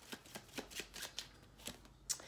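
A deck of tarot cards being shuffled by hand: a faint, quick run of soft card clicks at about four a second that thins out and stops near the end.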